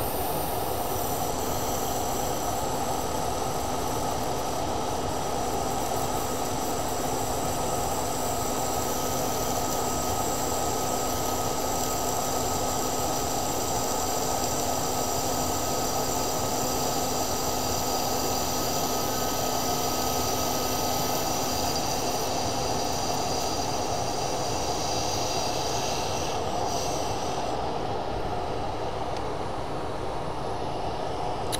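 Lathe spinning a cast-resin turning blank while a hand-held turning tool cuts into it, throwing off resin shavings, over a steady machine noise with a few constant whines. The higher whine drops away in the last few seconds as the tool comes off the work.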